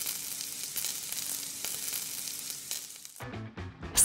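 Oil sizzling in a frying pan, a steady hiss that cuts off suddenly about three seconds in.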